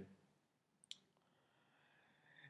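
Near silence, with one short click about a second in.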